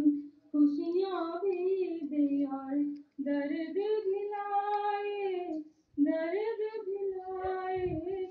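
A woman singing a Hindi song solo and unaccompanied into a microphone, in long held notes, in three phrases broken by short pauses for breath.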